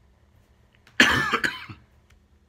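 A man coughs once, about a second in: a sudden, loud cough that dies away in under a second.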